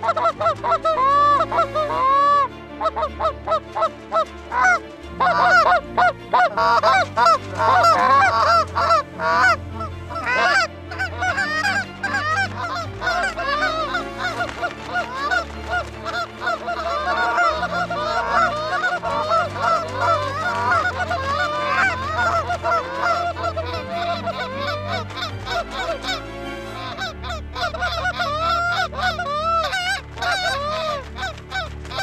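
Several hand-held goose calls blown at once, a rapid, overlapping run of Canada goose honks and clucks, calling to a flock of Canada geese circling within sight.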